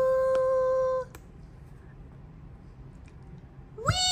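A woman's sung voice holding one long note on "we", cut off about a second in. Then a quiet stretch with a faint tap or two as the board-book page is turned. Near the end she starts singing high, swooping "wee" notes.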